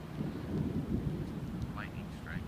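Distant thunder rumbling low, swelling a moment in and rolling on.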